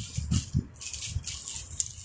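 Saree fabric rustling and crinkling in short, uneven spells as it is handled and spread out, with soft low thuds of cloth and hands on the table.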